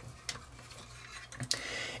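Faint clicks and taps of hard plastic parts on a large Studio Cell Unicron transforming figure being moved by hand, with a sharper click about one and a half seconds in.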